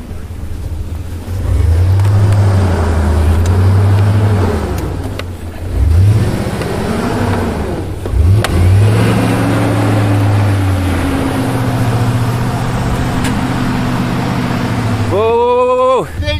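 A truck's engine revving up and down several times, then holding steadier, as the truck stuck in deep snow is driven and pushed out.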